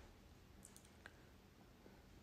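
Near silence: room tone with a few faint, short clicks around the middle.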